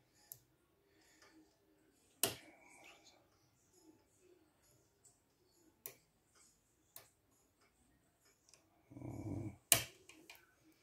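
Lock pick and tension tool working inside an EVVA DPI dimple-pin euro cylinder: a few sharp metal clicks, the loudest about two seconds in, with faint small ticks and scrapes between them. A brief murmur of voice comes just before the last click near the end.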